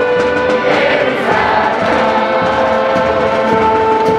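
A large group of voices singing a song together in chorus, in long held notes.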